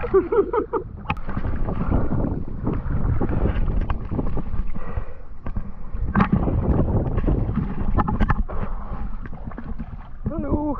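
Seawater sloshing and splashing around people wading waist-deep as they gather in a fish-pen net, with wind buffeting the microphone and a few sharp knocks.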